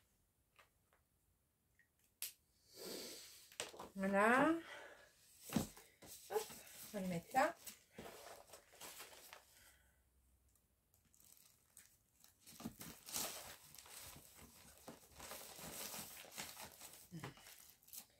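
Plastic-sleeved cross-stitch kits crinkling and rustling as they are handled and sorted into a plastic storage box, in two spells, the longer one in the second half, with a sharp knock about five seconds in. A couple of short wordless vocal sounds come between the rustles.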